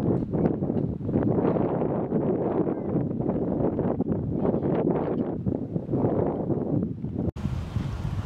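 Wind buffeting the microphone: a heavy, fluctuating low rumble, broken by a brief dropout near the end.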